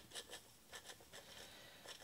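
Faint, soft patter of granulated sugar being poured from a glass onto flour in a stainless steel bowl, with a few light ticks of grains.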